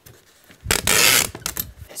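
Packing tape pulled off a handheld tape gun onto a cardboard box: one loud rip of about half a second, followed by a few small clicks near the end.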